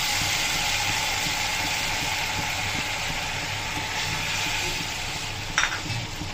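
Water just poured into hot oil and fried vegetables in a kadhai, sizzling steadily and slowly dying down. A brief clink comes near the end.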